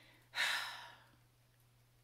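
A woman sighing: one breathy exhale about a third of a second in that fades away within about half a second.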